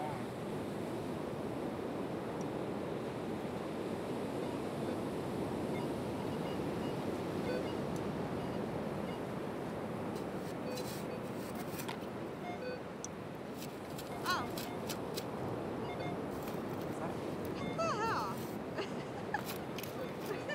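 Ocean surf as a steady wash of noise, with faint far-off voices twice in the second half and a few sharp clicks around the middle.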